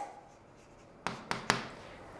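A pen writing on a smart-board display screen: a few faint strokes and three light taps about a second in.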